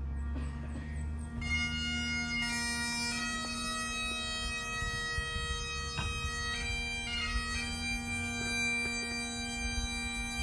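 Bagpipes playing: a steady drone sounds from the start, and a melody of long held notes comes in over it about a second and a half in.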